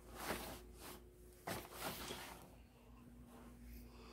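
Soft rustling of a cotton-blend hoodie's fabric as it is grabbed and lifted off the heat press, a few brief brushes over a faint steady hum.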